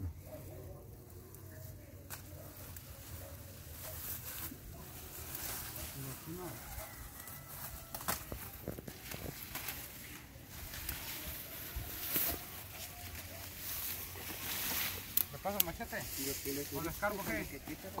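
Dry grass and brush rustling, with scattered crackles, as a hand works through the vegetation around a burrow mouth. Low men's voices murmur faintly underneath and become clearer near the end.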